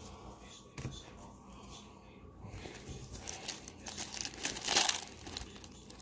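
Crinkling of a 1990-91 Pro Set hockey card pack's foil-lined wrapper as it is picked up and handled, faint at first and growing into louder rustles near the end.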